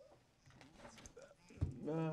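A quiet pause in courtroom speech holding only faint small noises. A brief low thump comes near the end, and then a voice starts speaking again.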